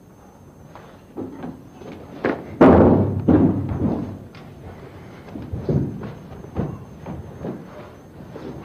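Bodies hitting a carpeted floor in a staged bar fight. A heavy crash of a tackle comes about two and a half seconds in, and is the loudest sound. Scattered thuds and scuffling from grappling on the floor follow.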